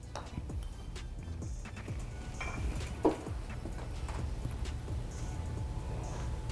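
A mallet putter with a milled face striking a golf ball: one sharp click about three seconds in, with a few lighter taps around it, over quiet background music.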